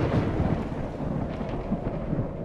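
Fading tail of a dramatic boom sound effect: a low thunder-like rumble that slowly dies away.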